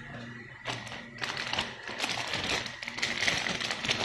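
Clear plastic bags holding plastic model-kit runners crinkling and crackling as they are handled. The crackle is sparse at first and grows dense and busy after about a second.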